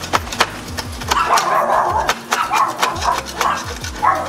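A hand tool scraping and clicking along a metal window frame, clearing out leftover shards of broken glass: a run of sharp clicks, with longer scrapes in the middle.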